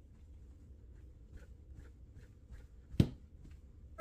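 An Ekster aluminium card-holder wallet being flicked and shaken in the hand: faint light ticks, then one sharp clack about three seconds in. The cards stay held fast inside it.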